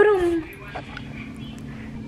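A dog barks once, a short bark that falls slightly in pitch, then a faint steady hum remains.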